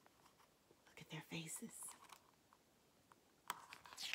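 Mostly near silence, with a brief soft whisper about a second in, then a click and a rustle of picture-book pages being handled near the end.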